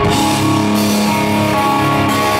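Live rock band playing loud: electric guitar over drums and bass.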